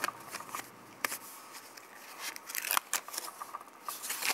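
Small cardboard boxes of fountain-pen ink cartridges being handled and shifted about in a metal tin: light rustling and scraping broken by a few sharp clicks and taps.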